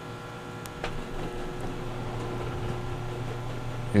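Steady low machine hum with a few faint whining tones from the human centrifuge as its arm slows toward a stop. The hum grows slightly louder after about a second, and there are a couple of faint clicks near the start.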